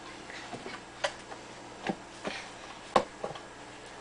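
Plastic baby-wipes tub being handled and knocked about, giving about five short, sharp clicks and knocks, the loudest about three seconds in.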